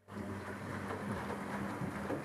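Electrolux EWF10741 front-loading washing machine starting a tumble in its wash cycle: the drum motor hums and water and laundry slosh in the drum. It starts abruptly right at the beginning and runs steadily.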